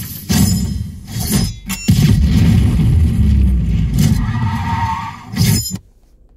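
A film soundtrack playing loudly through the car's audio system from the head unit, a dense mix of music and action effects, cutting off suddenly just before the end.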